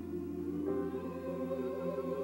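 Church choir singing a sustained chord over a steady low bass note, the voices swelling into a fuller chord about a second in.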